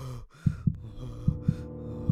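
Heartbeat sound effect: low double thumps repeating a little faster than once a second, under heavy breathing in the first half. A steady low drone swells in about halfway through, building horror-film tension.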